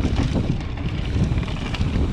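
Mountain bike rolling fast down a dirt and leaf-covered trail: a steady low rumble of tyres and wind buffeting the handlebar-mounted microphone, with frequent small clicks and rattles from the bike over the rough ground.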